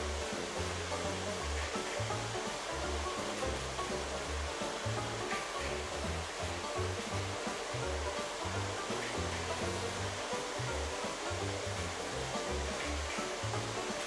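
Several three-rail toy trains running together on tubular metal track, a steady whirring rumble of motors and wheels. Background music with a low, stepping bass line plays underneath.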